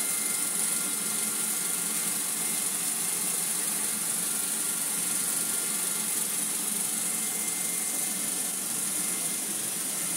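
Vorwerk robot vacuum running as it cleans a rug: a steady hiss of its suction fan, with a thin high whine over it.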